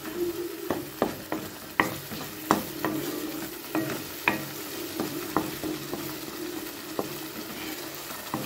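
Wooden spatula stirring and scraping a thick shallot chutney paste frying in oil in a pan, with a faint sizzle. Sharp scrapes and taps of the spatula against the pan come irregularly, about one a second, over a steady low hum.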